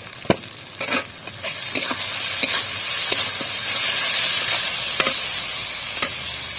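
Onion-tomato masala with ground spices sizzling in oil in an iron kadai, stirred with a metal spatula that scrapes and clacks against the pan about once a second. The sizzle grows louder from about a second and a half in.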